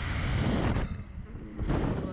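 Wind rushing over the microphone of the camera on a SlingShot ride capsule as it swings, coming in two gusts: one lasting about the first second, a shorter one near the end.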